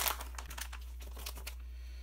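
A clear plastic bag crinkling as it is handled, starting with a sharp crackle and dying away about a second and a half in, leaving only a low steady hum.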